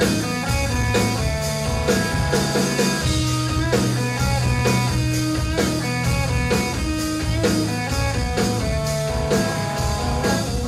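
Live rock band playing an instrumental passage: an electric guitar solo with long held notes over bass and drum kit, with a steady drum beat.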